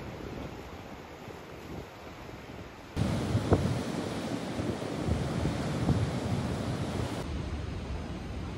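Sea waves washing among rocks on a rocky shore, then, about three seconds in, louder surf of waves breaking over the rocks, with wind on the microphone.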